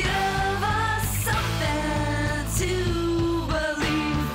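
Oi street-punk rock song: distorted electric guitars, bass and drums playing at full level, with a high melody line of long held notes over the top.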